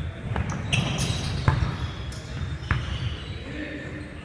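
A basketball striking the hardwood gym floor a few separate times, echoing in a large hall, with players' voices.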